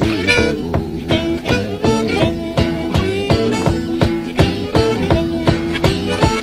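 Blues instrumental break: harmonica playing held notes over a steady, rhythmic hollow-body electric guitar figure.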